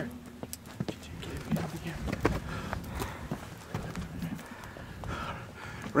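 Footsteps scuffing and crunching through dry sagebrush, a quick irregular run of snaps and brush rustles.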